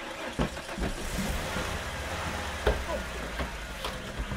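Van engine running under a steady rushing noise, with a few sharp thumps on the van's ribbed metal cargo floor as a body is bundled in, one near the start and a louder one partway through.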